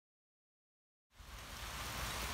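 Dead silence, then about a second in a steady hiss of falling rain starts abruptly and keeps on evenly.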